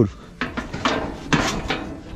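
Stiff, heavy rusty steel gate of a rodeo bucking chute being forced open by hand, giving a few metal clanks and scrapes.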